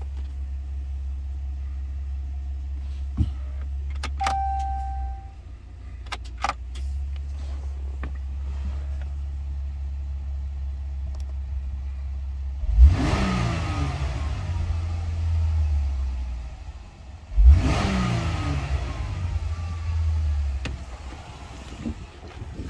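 Pickup truck's engine idling with a steady low hum, heard from inside the cab. Twice in the second half, a few seconds apart, it is revved, each rev rising sharply and then falling back to idle.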